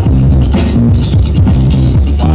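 Loud electronic dance music with a heavy bass line and a steady beat, played through a portable loudspeaker.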